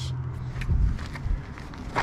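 Movement and handling noise: a few low thumps and light scuffs of footsteps on gravel, with a low steady hum that stops about half a second in.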